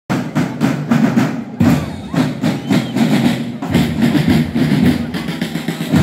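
Marching band drums playing a fast rhythmic cadence, with a brief break about one and a half seconds in.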